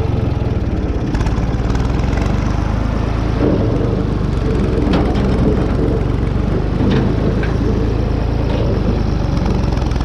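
Ford 3600 tractor engine running steadily as the tractor drives, with a few light knocks about five and seven seconds in.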